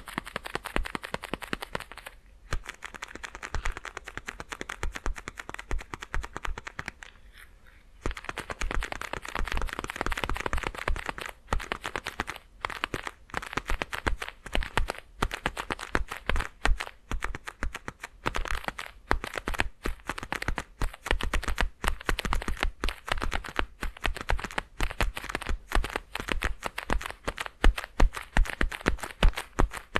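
Leather gloves rubbed and flexed close to a binaural microphone: a dense, irregular run of creaks and crackles, with a short lull about seven seconds in.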